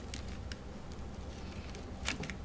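Faint paper rustles and a few small clicks as hands press and rub a sheet of paper down onto an inked rubber band to print it, over a low steady hum.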